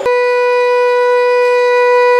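Conch shell (shankha) blown in one long, steady note with a bright, reedy ring, starting suddenly.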